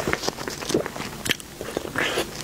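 Close-miked eating sounds: a person biting and chewing a soft, squishy dessert ball, with irregular wet smacks and clicks from the mouth.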